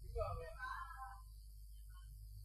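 A brief pause in a man's speech: a faint, soft voice murmurs for about the first second, then only a low steady hum remains.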